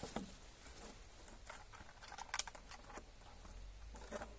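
Faint plastic crinkles and scattered light clicks as a large plastic water bottle and its attached cord are handled in gloved hands, with the sharpest click a little past halfway.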